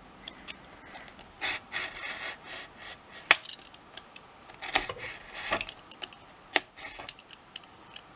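Craft knife blade drawn in short, irregular scratchy strokes through black card on a cutting mat, with a few sharp clicks. The cut is being gone over again because it has not yet gone all the way through the card.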